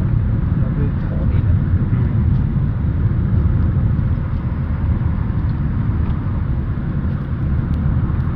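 Steady, deep rumble of a moving car heard from inside the cabin: road and engine noise at cruising speed.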